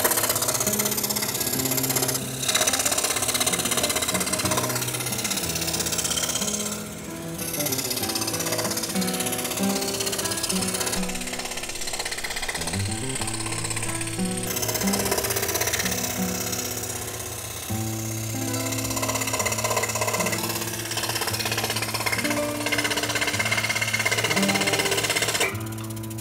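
Scroll saw running steadily, its fine reciprocating blade chattering as it cuts a wooden jigsaw puzzle board into pieces, under background music.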